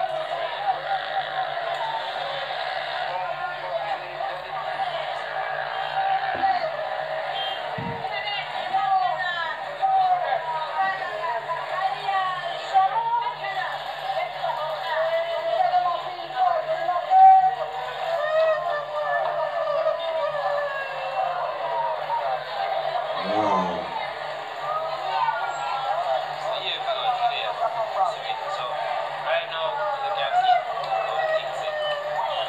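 Several voices talking over one another, played back from a video clip through a tablet's small speaker, which sounds thin and cut off in the highs. A steady low hum runs underneath.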